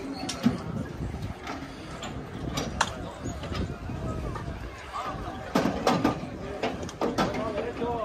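Indistinct men's voices calling out over scattered sharp knocks and clanks as a racehorse is pushed into a metal starting gate.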